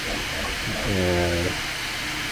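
Bambu Lab P1P 3D printer printing, its cooling fan making a steady hiss, turned up for a steep overhang.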